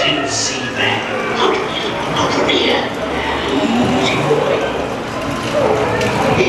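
Recorded voices of the Pirates of the Caribbean ride's animatronic pirates talking over one another, unintelligibly, over a steady low hum of the ride's show audio.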